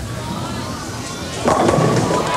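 Bowling ball rolling down the lane, then about one and a half seconds in the pins crash for a strike and the crowd starts cheering.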